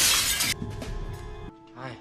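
A loud crash and shatter of breaking debris that cuts off abruptly about half a second in. Film-score music follows, with a short spoken "hi" at the end.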